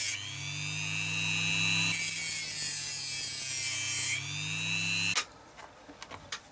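Handheld rotary tool with a cut-off disc cutting a small plastic piece. A loud grinding hiss ends just after the start and comes again from about two to four seconds in, while the motor whine rises in pitch in the pauses when the disc runs free. The motor cuts off about five seconds in, followed by light ticks of small parts being handled.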